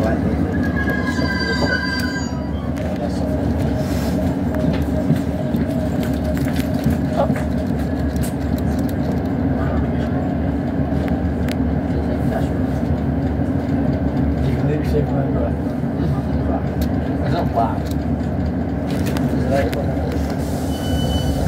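Interior of a Class 156 Super Sprinter diesel multiple unit on the move: steady drone of the underfloor diesel engine with the rumble and clicks of wheels on rail. A brief high-pitched wheel squeal comes about a second in.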